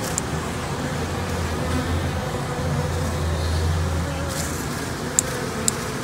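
Honey bees humming steadily over an open hive, with a low rumble for a few seconds in the middle and a few sharp clicks near the end.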